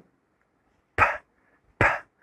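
A man pronouncing the English /p/ sound in isolation twice: two short, breathy puffs of air a little under a second apart, with no voice in them, the aspirated release of a voiceless p.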